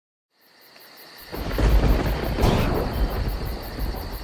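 Deep, rumbling, thunder-like sound effect of a logo intro, swelling up out of silence and turning loud about a second and a half in.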